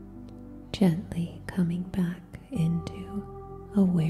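A woman speaking softly, close to a whisper, starting about a second in, over a steady ambient drone of held tones that shift to new pitches midway.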